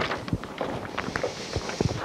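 A few footsteps with scattered light knocks as a person walks a short way across the room.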